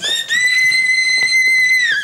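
A woman's long, shrill wail held on one very high pitch for nearly two seconds, dropping at the very end: crying out in distress.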